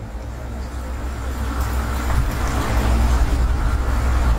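Low, steady rumble of road traffic with a faint hiss, slowly growing louder.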